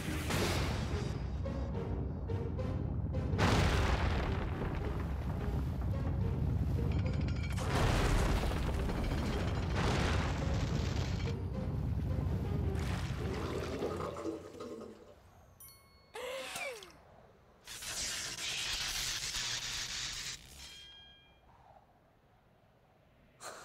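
Cartoon soundtrack: dramatic music under heavy rumbling and repeated crashing surges for about fourteen seconds. It then drops to quieter whooshing effects and a brief rising-and-falling tone.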